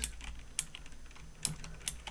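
Typing on a computer keyboard: a few separate, unhurried keystrokes, about four clicks in two seconds.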